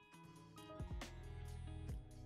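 Quiet background music: sustained notes over a steady low bass, with a few sharp percussive hits about a second in and again near the end.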